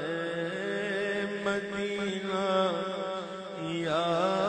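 A solo voice chanting a slow, ornamented devotional melody, a naat, over a steady low drone, with a rising vocal sweep near the end.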